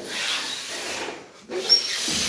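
Hard breaths blown into latex party balloons to inflate them: two long blows with a short pause between, the second starting about one and a half seconds in with a brief high squeak of stretched rubber.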